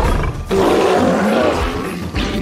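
Cartoon monster roar for the Nian, the horned New Year beast of Chinese legend: a rough, growling roar with a short break about half a second in, then a longer roar. Music plays underneath.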